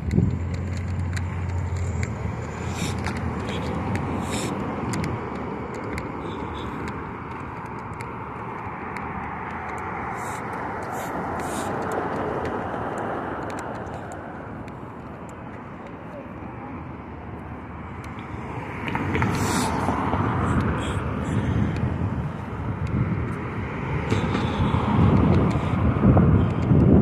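City street traffic: the noise of passing cars swells and fades, loudest about three-quarters of the way through, with scattered light clicks over it.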